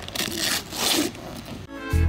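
Wrapping paper being ripped off a gift box in two tearing pulls. Background music with a steady beat starts near the end.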